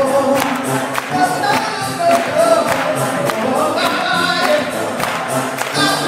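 Gospel choir singing, with a steady beat underneath.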